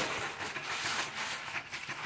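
A coin scratching the silver coating off a paper lottery scratch card in quick, closely spaced strokes.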